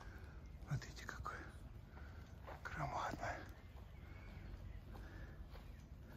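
Quiet voices: soft, half-whispered speech twice, briefly, over a faint steady low background hum.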